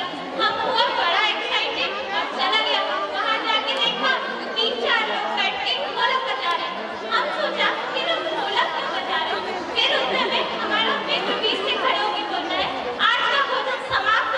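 Speech: women talking into microphones over a hall sound system, with background chatter.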